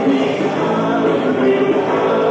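Southern rock band playing live, with voices singing over the instruments.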